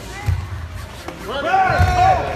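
Dull thuds of feet and bodies on a foam-mat floor during a karate point-fighting clash, the second as a fighter goes down, with several spectators shouting out in reaction, loudest near the end.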